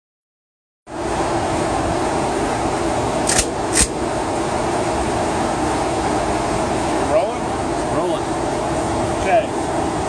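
Steady ventilation noise from an indoor shooting range's air-handling system, with two sharp clicks about half a second apart a third of the way in.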